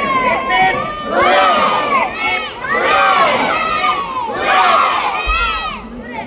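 A large crowd of children shouting and cheering together in four loud surges, about a second and a half apart.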